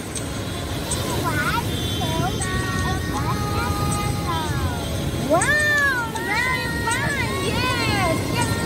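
High-pitched voices, with rising and falling exclamations, over background music, with a steady low rumble of wind and surf underneath.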